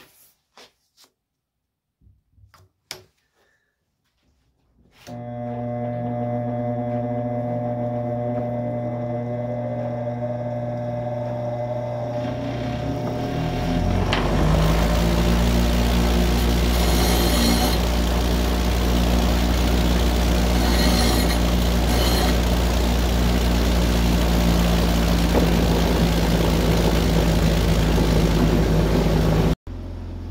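A few light knocks, then a bench grinder motor starts and runs with a steady hum. About halfway through, a lathe gouge held in a sharpening jig meets the grinding wheel, adding a louder grinding noise as the steel is sharpened.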